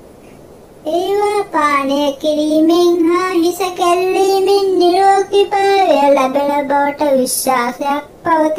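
A high voice singing a slow, unaccompanied verse with long held notes, starting about a second in.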